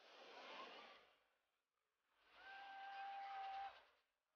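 Faint, quiet passage of a hardstyle track: two soft swells of airy hiss-like noise, the second carrying a steady held tone that cuts off just before the end.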